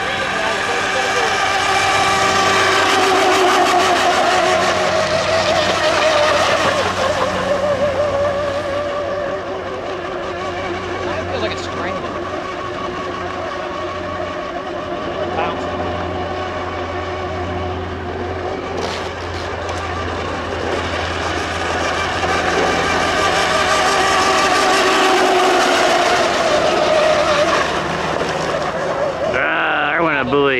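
1/10-scale electric RC race boats running flat out, their motors making a high whine that swells as the boats come close and drops in pitch as they pass, over the hiss of spray from the hulls. The loudest passes come a few seconds in and again near the end.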